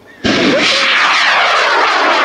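CTI M1830 C-Star M-class rocket motor burning at liftoff of a high-power rocket: a loud rushing noise that starts abruptly about a quarter second in, with a sweep of pitches that falls as the rocket climbs away.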